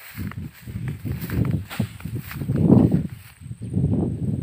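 Footsteps pushing through tall grass, with stalks swishing against the legs: an uneven run of dull steps, about two or three a second.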